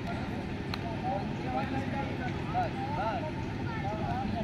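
Voices of several people talking and calling out at a distance, overlapping, with one short sharp tap about three quarters of a second in.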